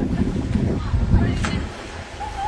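Wind buffeting the microphone in uneven deep gusts that ease off near the end, with faint distant voices underneath.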